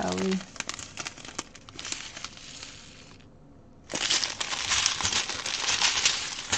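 Clear plastic bags of diamond painting drills crinkling as they are handled, full of small crackles, easing briefly past three seconds and coming back louder from about four seconds in.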